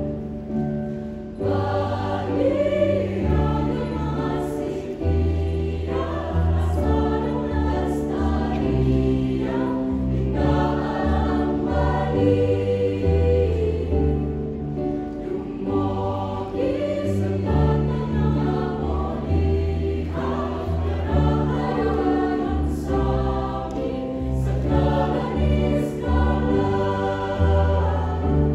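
Mixed choir of men and women singing in harmony, with held chords that change every second or so over a deep bass line.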